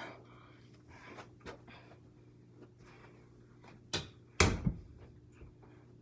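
A mini basketball striking an over-the-door hoop: two sharp knocks about half a second apart, the second louder and deeper, with faint taps before them.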